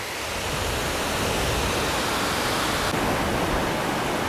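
Sea waves washing against a rocky shoreline: a steady rushing noise that swells slightly and then holds.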